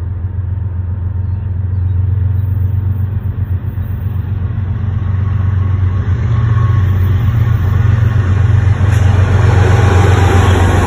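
Canadian National diesel locomotive CN 2297 leading a freight train toward the listener: a deep steady engine rumble that grows louder as it approaches, with rising wheel and rail noise in the last few seconds as the locomotive draws level.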